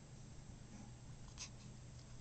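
Near silence: quiet room tone with a steady low hum, and one brief faint noise about one and a half seconds in.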